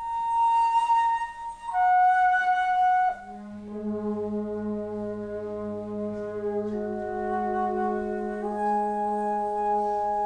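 Wind quintet music: a flute holds a long high note, then steps down to another held note. About three seconds in, the other winds enter with a sustained chord over a low held note that rings on steadily.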